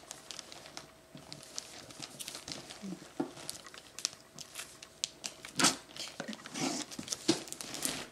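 Gift-wrapping paper on a box crinkling and tearing as it is slit open with a small knife, in scattered sharp crackles and short rustles; the loudest rustle comes a little past halfway.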